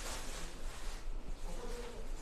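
A steady, low buzzing hum under a hiss of background noise.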